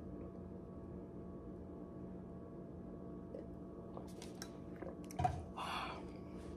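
Person drinking water from a plastic water bottle: quiet swallowing over a steady low hum, with a few small clicks, a sharp knock about five seconds in, and a short breathy sound just after it.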